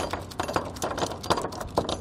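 Metal S-hook on a slack ratchet strap rattling and clinking against a steel D-ring tie-down anchor as the strap is jerked about: many quick, irregular clicks. The loose hook works free of the ring near the end.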